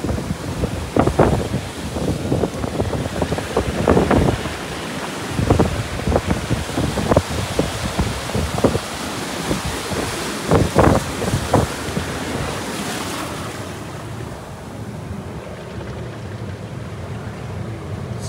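Surf breaking on a rocky lava shoreline, with wind on the microphone. Many sharp gusts and splashes come through the first two-thirds, and it settles to a quieter wash from about 13 seconds in.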